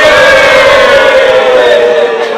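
A large group of people shouting together in unison: one long, loud held cheer whose pitch sinks slightly, breaking off near the end.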